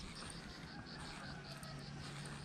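Faint insect chirping: an even run of short, high chirps, about seven a second.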